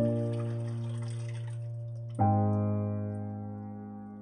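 Slow piano music: a chord struck at the start and another about two seconds in, each left to ring and fade. Under the first chord, water pours from a small cup into a toilet bowl and stops before the second chord.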